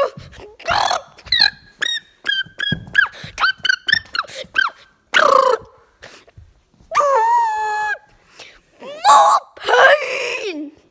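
A quick run of short, high squeaks, a louder cry, then a held squeal about seven seconds in and a loud cry near the end, over knocks and rubbing as plush toys are shaken about in a play fight.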